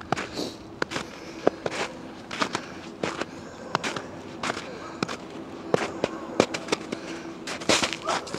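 Footsteps crunching through crusted snow: an irregular string of short, sharp crunches and snaps.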